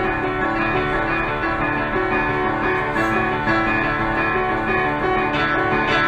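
Solo grand piano played live, a quick figure of notes repeating in a pattern that makes it sound almost bell-like.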